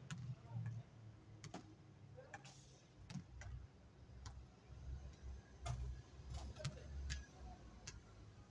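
Basketball game on an outdoor hard court: a ball bouncing and players' footsteps, heard as scattered sharp knocks at irregular intervals over a low rumble.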